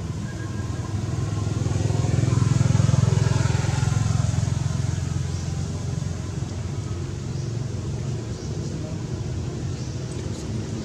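A motor vehicle engine running with a steady low hum that swells to a peak about three seconds in, then fades back down.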